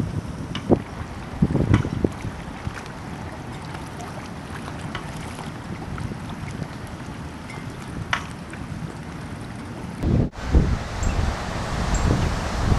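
Wind buffeting a microphone over open water: a steady, uneven rumble with a few brief sharp sounds. About ten seconds in the noise breaks off suddenly and returns as a louder, gustier rumble.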